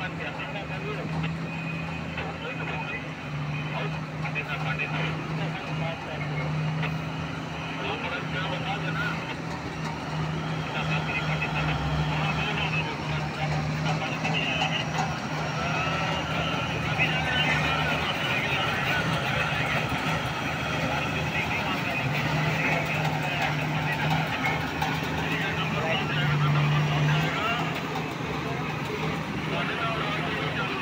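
Heavy diesel engines of a mining excavator and haul truck running as the excavator loads the truck, a steady low engine hum throughout.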